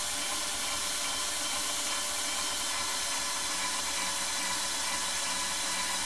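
Bosch IXO cordless screwdriver running steadily at high speed, its hex-shank wood drill bit slowly boring into thick acrylic (Plexiglas). The fast, low-torque drive melts its way through the plastic, making a clean hole.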